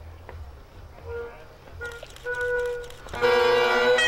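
Great Highland bagpipes of a band of pipers striking in: a few short separate notes at first, then about three seconds in the drones and chanters sound together in full, loud and steady.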